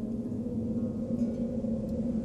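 Soft instrumental background music, a couple of low notes held and ringing on with no clear strumming.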